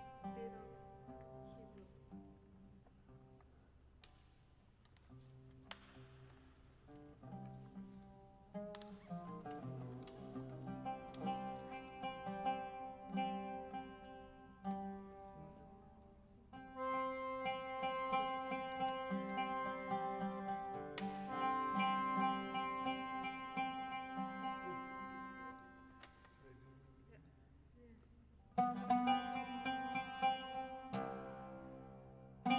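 Oud and accordion playing a Ladino song: sparse plucked oud notes at first, then the accordion's held chords come in louder about halfway through, and a loud plucked attack near the end.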